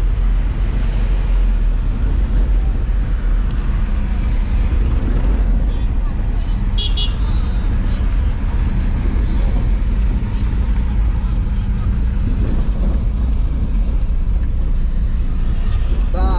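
Steady vehicle engine and road rumble while moving through city traffic, with a short high horn beep about seven seconds in.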